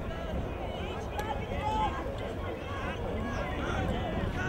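Several people talking at once at a distance, their voices overlapping into a low babble over a steady low rumble.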